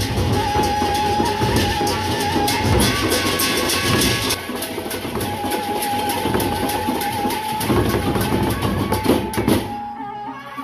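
Gendang beleq ensemble: large Sasak barrel drums beaten in a dense, fast rhythm, with a long held high note sounding over the drumming for a few seconds at a time. The playing thins out just before the end.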